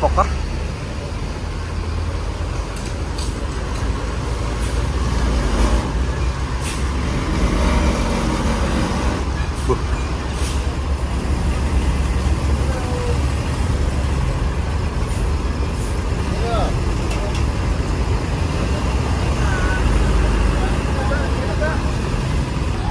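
Heavy diesel road traffic: a Mercedes-Benz OH 1626 coach and trucks running and manoeuvring, with a steady low engine rumble throughout and a few short hisses.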